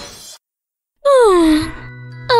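A person's sigh, falling in pitch, about a second in, after a short silence; a tail of music cuts off near the start.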